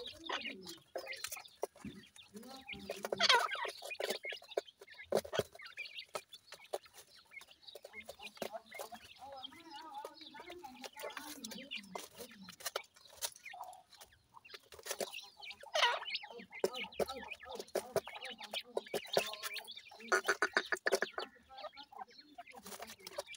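Grey francolin chicks calling in short chirps and clucks, over scattered clicks and scratches as they peck feed in dry soil. Louder bursts of calls come about three seconds in and again near the end.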